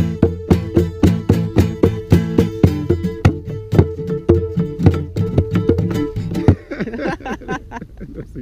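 Acoustic guitar strummed in a steady rhythm, about three strokes a second, ending on a final chord about six and a half seconds in.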